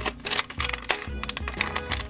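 Plastic foil blind-bag packet crinkling and crackling as fingers pull and tear at it, giving many quick sharp crackles, over background music.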